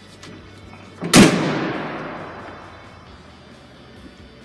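Pickup tailgate of a 2017 Toyota Tundra slammed shut about a second in: one loud bang that echoes and fades over about two seconds, with faint background music under it.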